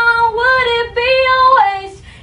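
A girl singing solo a cappella: she holds a long note, then moves through a short run of notes stepping up and down and drops to a lower note near the end.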